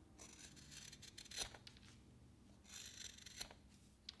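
Very sharp carving knife slicing shavings off a basswood block: two faint cuts, each a soft scraping hiss that ends in a small click as the blade leaves the wood.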